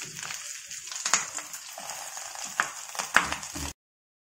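Oil sizzling steadily under a banana-leaf-wrapped pearl spot fish frying in a shallow pan, with a few sharp crackles and spits. The sound cuts off abruptly near the end.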